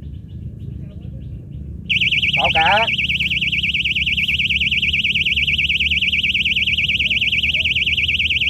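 Electronic fishing bite alarm sounding a continuous high-pitched warbling tone that starts suddenly about two seconds in: a fish has taken the bait on one of the set rods.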